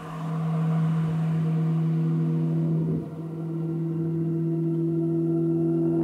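Held synthesizer drone of background music: a steady low tone, with a second, higher tone coming in about three seconds in and held on.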